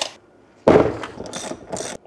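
Handling noise of a heavy battery and its thick cables on a wooden workbench: a sudden knock about two-thirds of a second in, then about a second of uneven clattering and scraping.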